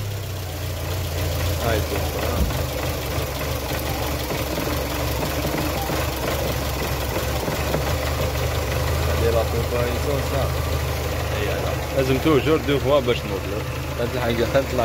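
Renault Symbol 1.2 petrol engine idling steadily while it is being checked with a pressure gauge for a hard-starting fault.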